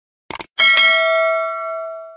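A quick double mouse-click sound effect, then a single bright bell ding that rings on and slowly fades over about a second and a half: the notification-bell chime of a subscribe animation.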